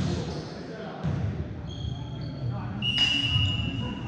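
Referee's whistle blown once near the end, a steady shrill blast of about a second, over crowd chatter and low thuds of a ball bouncing on the gym floor.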